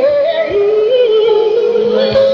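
A woman singing live in concert, a soulful pop/R&B ballad vocal over a band. She holds a long, wavering note from about half a second in.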